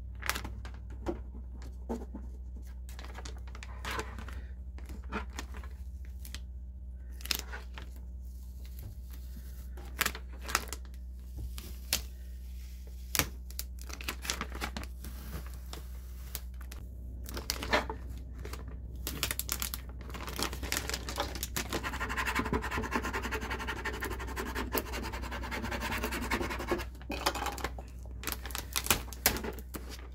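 Sticky transfer tape being peeled off a vinyl decal on a plastic bucket: scattered crackles and taps, then a longer continuous ripping peel in the second half. The tape is clinging hard and comes away only with effort.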